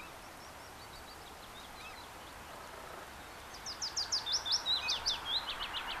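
A bird calling: a few faint high chirps early, then from about halfway a quick series of louder, sharp, high chirps, several a second, over a faint steady outdoor hiss.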